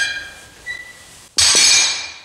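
Iron weight plates on EZ curl bars clinking as the bars are lowered after a set, then a loud metallic clang with ringing about a second and a half in as the bars are set down on the floor.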